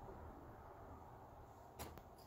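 Near silence: faint room tone, with one brief rustle near the end as the paperback picture book is handled.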